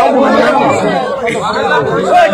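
A crowd of many people talking at once, their voices overlapping into a continuous chatter.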